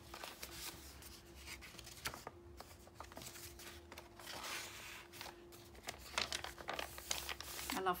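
Paper rustling and crinkling as the cardstock and paper pages of a handmade junk journal are handled: a page smoothed flat, a paper insert pulled out of a tuck, and the page turned. A faint steady hum runs underneath.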